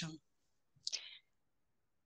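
A woman's speech ends at once, then near silence on a close microphone, broken about a second in by one brief faint mouth click and breath.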